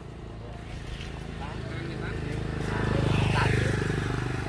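A motorcycle engine passing close by, growing steadily louder to a peak about three seconds in, then easing slightly.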